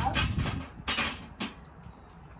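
A child's short, forceful breaths while bench pressing a barbell, three of them in about a second and a half, then quieter.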